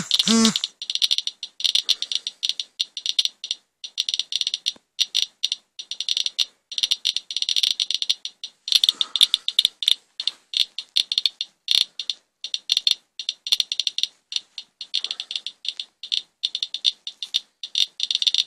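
Geiger counter with a pancake probe clicking rapidly and unevenly over a rain swipe sample, counting around 550–600 counts per minute. A sheet of paper between probe and sample blocks the alpha, so the clicks are beta radiation, far above the usual background of 34 counts per minute.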